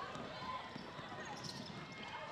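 A basketball being dribbled on a hardwood court, a few faint bounces over a low background of arena noise.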